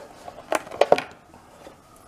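An Ethernet (RJ45) plug being unlatched and pulled out of the port of a SmartThings hub: a few sharp clicks and knocks, bunched together about half a second to a second in.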